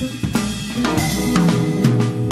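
Live jazz band playing, with drum kit snare and bass-drum strokes coming through strongly over electric bass notes and the rest of the band.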